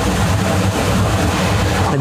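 Steady roar of a commercial pasta cooker at a rolling boil, mixed with a low kitchen hum.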